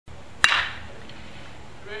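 A baseball bat striking a batting-practice pitch: one sharp crack about half a second in, with a short ring after it.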